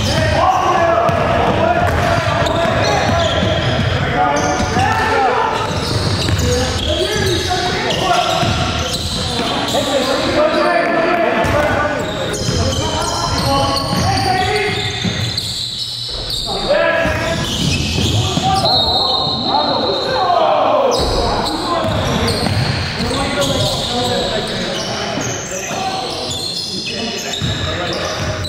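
Live basketball game sound in a gym: a basketball bouncing on the wooden court amid players' voices calling out, echoing in the large hall.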